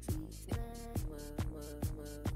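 Background music with a steady beat, a little over two drum hits a second, and short pitched notes between them.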